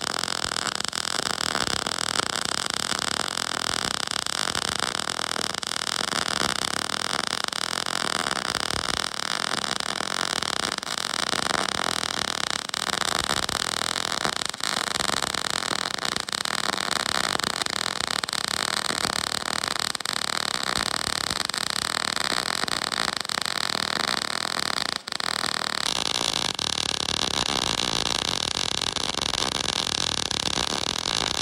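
MIG welding arc from a YesWelder MIG-250 Pro running on 3/8-inch scrap plate at 22 volts and 7.3 meters per minute wire feed, with a steady crackle. The arc breaks off for an instant about 25 seconds in, then restarts with a slightly different tone.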